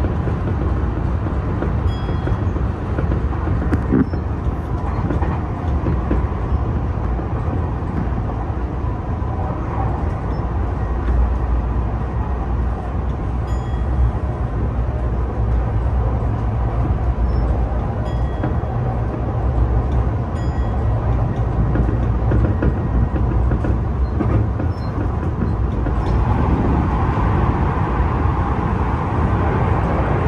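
Tokyu new 5000 series electric train running at speed, heard from inside the driver's cab: a steady rumble of wheels on rails. About 26 seconds in, the noise grows louder and harsher as the train enters a tunnel.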